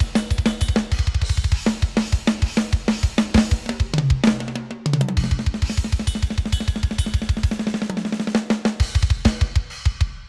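Hertz Drums sampled drum kit playing an unprocessed metal groove: fast double-kick runs under a snare backbeat and cymbals, with a short descending tom fill about four seconds in.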